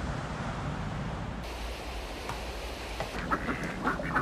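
Ducks quacking on open water: a run of short calls starts about two seconds in, over a steady background hiss.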